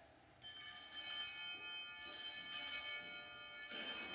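Altar bells rung in three shaken bursts, each a bright jingling ring that fades before the next, about a second and a half apart. They mark the elevation of the chalice at the consecration.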